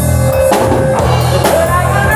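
A rock band playing live in a room: a drum kit with cymbal and drum hits over a steady bass line, with a held guitar or vocal note in the first half second, loud throughout.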